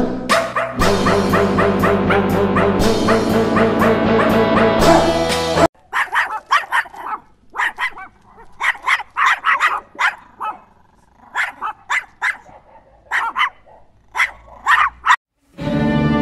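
Music for the first six seconds or so, then French bulldogs barking in short, irregular yaps as they play-fight, with gaps between the barks. The music comes back just before the end.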